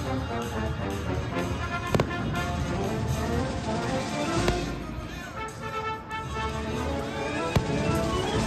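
Aerial fireworks bursting over continuous show music: three sharp bangs, about two seconds in, near four seconds, and just before the end, with a low rumble in between.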